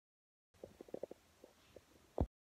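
Near silence: a dead cut for the first half second, then faint room tone with a few soft, short low knocks.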